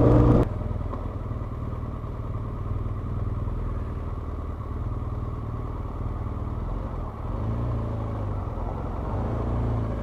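BMW adventure motorcycle's engine running at low revs as the bike rides slowly, a steady low rumble. A louder stretch with more wind cuts off abruptly about half a second in.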